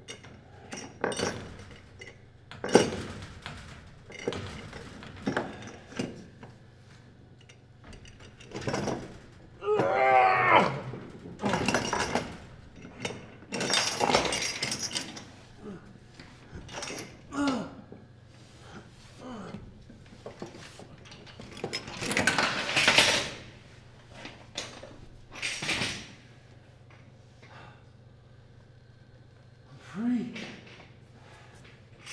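Irregular metal clinks, scrapes and knocks of a knife working at the base of a metal mesh cage, with a strained voice-like grunt about ten seconds in.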